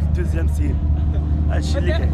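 A man speaking in short bursts over a loud, steady low rumble.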